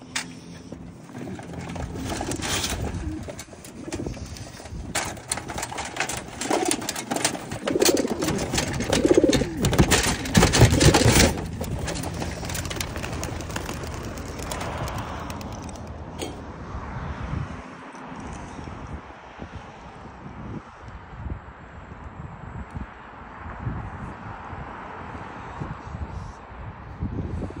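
Young racing pigeons cooing and clattering their wings as they burst out of their transport crates and take off. The flurry is loudest in the first half and dies down about twelve seconds in.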